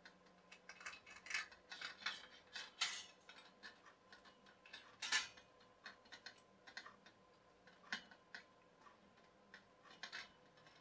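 Faint, irregular light clicks and taps of a chrome-plated wire storage shelf and its clamp being handled on a chrome steel pole, metal clinking lightly against metal, with a sharper click about five seconds in.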